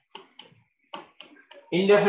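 A stylus tapping on a writing tablet while handwriting is put down, in short, sharp, irregular clicks, about half a dozen in under two seconds. A man's voice comes in near the end.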